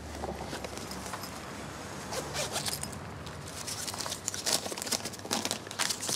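Rustling and zipping of a handbag as someone rummages in it for money, with short crackly scrapes that grow busier in the second half.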